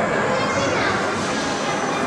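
Indistinct chatter of several people talking in a busy indoor room, no words clear.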